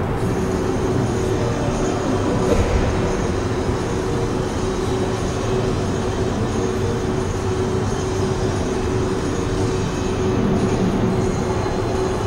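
Steady background noise of an ice-rink hall, a constant rumble with a low hum running through it.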